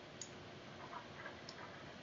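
Several faint, irregular clicks from handwriting numbers on a computer whiteboard app, over a low steady hiss.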